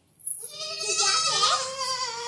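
Baby goat (kid) bleating: one long, wavering call that starts just after the beginning and is still going at the end.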